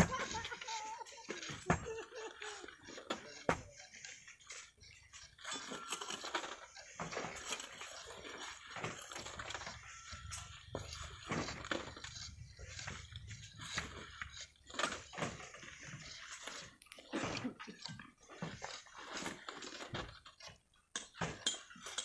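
Irregular, faint knocks and scrapes of a long bamboo pole prodding loose rock on a volcanic-sand cliff face, with small clatters of dislodged grit and stones.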